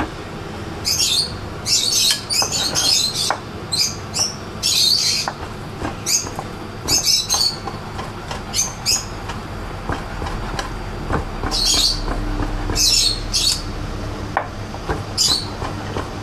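Irregular bursts of high bird chirping over a chef's knife chopping salt cod on a wooden cutting board, the knife giving scattered light knocks.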